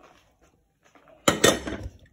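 A brief clatter of kitchenware about a second and a quarter in, a knock and rattle like a container being set down or handled beside a blender jug.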